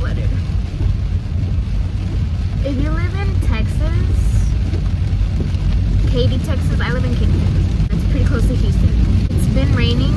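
Steady low road and engine rumble inside a moving car's cabin, driving on a rain-wet road. A woman's voice comes in short snatches a few seconds in, around the middle and near the end.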